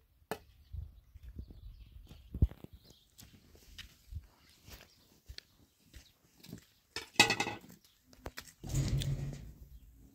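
Footsteps on dry dirt with small scattered knocks, then a short farm-animal call about seven seconds in and a longer, rougher animal sound near nine seconds.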